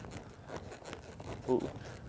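Faint, soft hoofbeats and scuffing of a loping horse in loose arena dirt. A man gives a short "ooh" about three-quarters of the way through.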